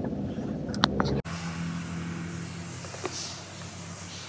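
Car cabin noise from a taxi, a low engine and road rumble with a sharp click, cut off suddenly about a second in. After it comes a quieter steady low hum with a faint click near the end.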